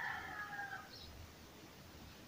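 A rooster crowing: one long call that falls in pitch at the end and stops about a second in.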